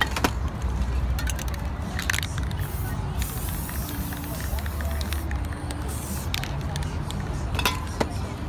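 Aerosol spray-paint can hissing in a short burst about three seconds in, with a few sharp clicks before and after, over a steady low street rumble.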